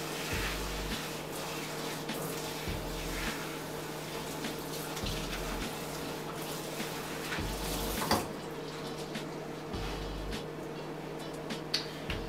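Kitchen faucet spray running steadily onto a wet wig and splashing into a stainless steel sink as the hair is rinsed and squeezed by hand. A brief sharp knock sounds about eight seconds in.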